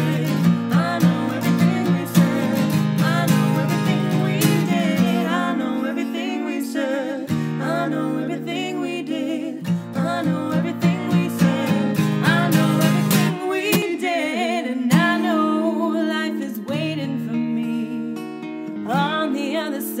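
Strummed acoustic guitar accompanying singing in an original acoustic pop song, home-recorded on a single microphone.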